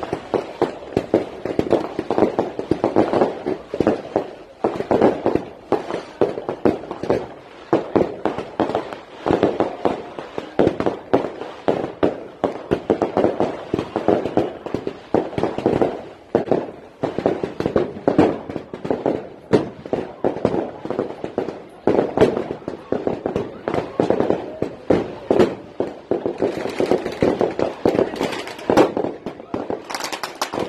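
A dense, continuous run of sharp pops and crackles, several a second, mixed with people's voices.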